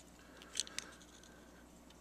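A few faint, short plastic clicks a little over half a second in, as the hinged red plastic housing of a pop-open replacement plug is handled and swung open; otherwise near-quiet room tone.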